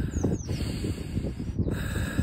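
Wind buffeting the phone's microphone as a low rumble, with two short falling bird chirps near the start.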